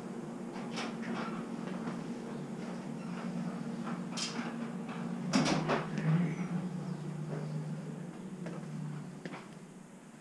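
A few scattered knocks and clicks from moving through a house and handling things, over a steady low hum that stops a little before the end.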